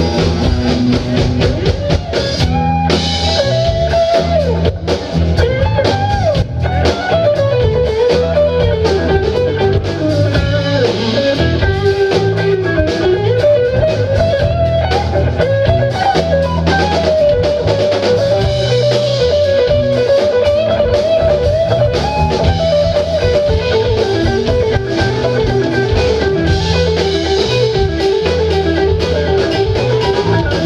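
Live rock band playing an instrumental passage: a lead electric guitar line with bent, gliding notes over electric bass and a drum kit.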